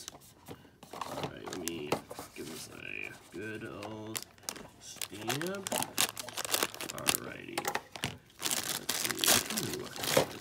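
Shiny plastic blind bag crinkling and crackling in the hands as it is squeezed and cut open with scissors, in many short irregular crackles.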